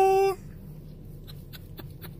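A man's held sung note, the end of a line, cutting off about a third of a second in. After it there is a low steady hum with a few faint clicks.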